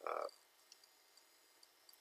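A brief drawn-out 'aa' hesitation sound from the narrator's voice at the very start, then near silence with a few faint, tiny ticks.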